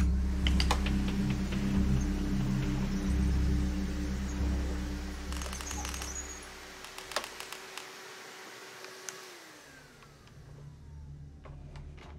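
Upright vacuum cleaner running, then switched off nearly ten seconds in, its motor whine falling in pitch as it winds down. A few sharp clicks come just before it stops.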